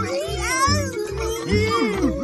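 Cartoon children's voices wailing with gliding, rising and falling cries of disgust at a very sour taste. Under them runs background music with a steady bass beat of about three pulses a second.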